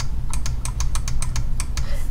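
Rapid clicking at a computer, about seven sharp clicks a second, over a low steady hum.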